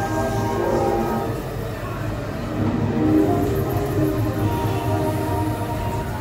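Dark-ride soundtrack music with long held notes, playing over the steady low rumble of the ride vehicle running along its overhead track.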